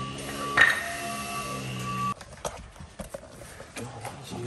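A steady hum with a loud knock about half a second in, cutting off suddenly about two seconds in. Then a scatter of light clicks as loose bearing parts drop out of the separated Chieftain tank gearbox onto the floor.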